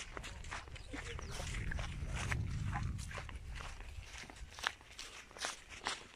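Footsteps on dry ground: a run of light, irregular crunches. A low rumble on the microphone lies under them for the first three seconds.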